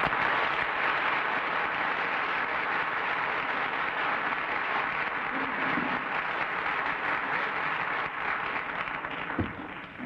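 Studio audience applauding steadily, tapering off over the last couple of seconds.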